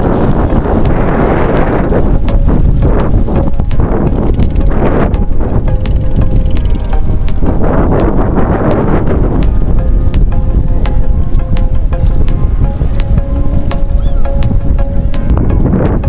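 Heavy wind buffeting the microphone over sloshing shallow seawater, with bursts of splashing near the start and again about eight seconds in.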